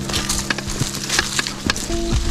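Diamondback Release 3 mountain bike rolling over dry leaf litter and twigs on a dirt singletrack: a steady crackle of tyres on leaves, broken by sharp clicks and knocks as the bike goes over bumps.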